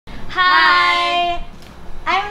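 A woman's voice holding one high, steady note for about a second.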